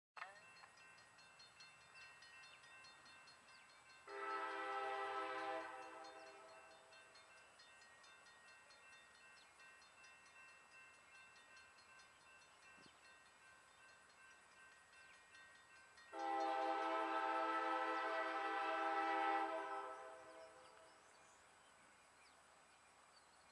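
Approaching switcher locomotive sounding its air horn twice: a blast of about a second and a half around four seconds in, then a longer blast of about three and a half seconds later on.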